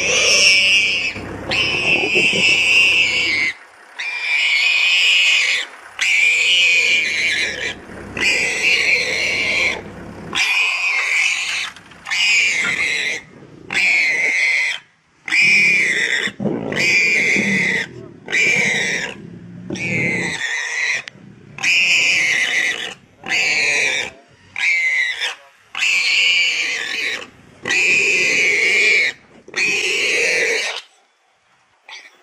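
Warthog squealing over and over in harsh screams, each about a second long with short gaps: distress screams of a pig caught and being eaten alive by lions.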